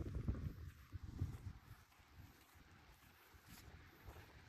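Wind buffeting the microphone in low, uneven rumbles that die down about halfway through, leaving a faint hush.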